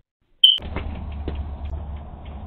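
A single short, loud electronic beep about half a second in, followed by a steady low hum with a few faint knocks.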